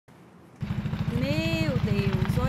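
Helicopter rotor beating in a rapid, steady low pulse, starting about half a second in.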